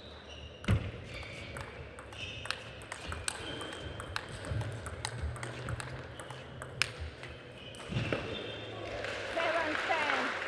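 Plastic table tennis ball struck back and forth in a rally, a sharp click off the rackets and the table roughly once a second. Near the end the rally stops and a shout and a swell of crowd noise rise.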